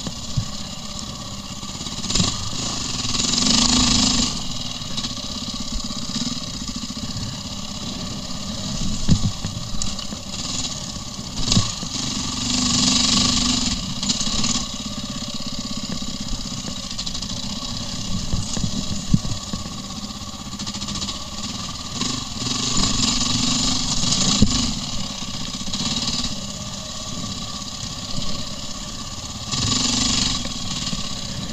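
KTM 400 EXC enduro motorcycle's single-cylinder four-stroke engine running at low speed on a dirt trail, heard from a helmet camera. The throttle is opened in louder bursts a few times, with scattered knocks from the bike over rough ground.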